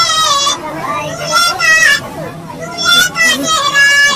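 A high-pitched, sped-up cartoon cat voice singing a rustic Hindi song in wavering held notes, with a short break about halfway through.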